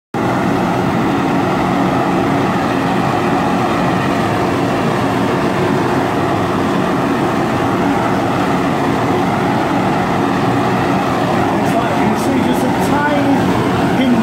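Gas blowtorch flame burning steadily, a loud even rushing noise, as it heats a spun silver dish to anneal it. A few faint clicks come near the end.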